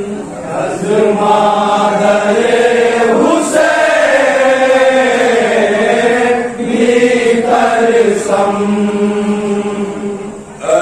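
A group of men's voices chanting a noha, a Shia lament, together without instruments, in long phrases with short breaks.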